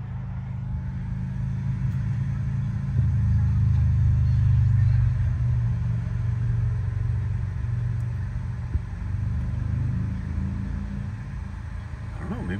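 A steady low mechanical rumble, heard inside a parked car's cabin while it supercharges. It grows louder about three seconds in and eases back after a few seconds.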